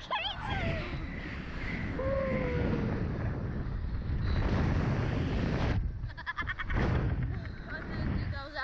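Rushing wind buffeting the microphone as the slingshot ride's riders swing through the air, with a child laughing at the start, a short falling cry about two seconds in, and a burst of quick laughter past the middle.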